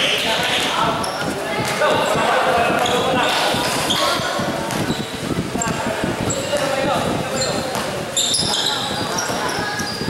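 Game sounds in an echoing gym: a basketball bouncing on the court amid players' and spectators' shouts and chatter, with short high squeaks in the later part.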